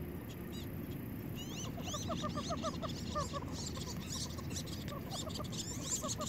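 Wood ducks calling: thin rising whistles, joined from about two seconds in by a fast run of short, repeated calls.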